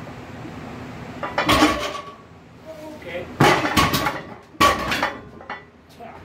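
A heavily loaded barbell with bumper plates dropped to the floor and rolling, hitting the floor and nearby plates in three loud crashes with metallic ringing, the second and third about a second apart and the loudest.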